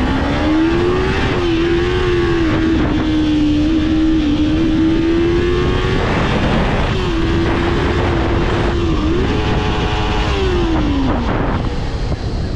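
Kawasaki Ninja 300's parallel-twin engine under way, rising in pitch at first and then holding steady, breaking off briefly about halfway and coming back, then falling away near the end as the bike slows. Wind rushes over the microphone throughout.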